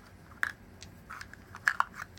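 Three rounded-edged dice being gathered up in the hand, clicking against each other in a few short, light clicks, two of them close together near the end.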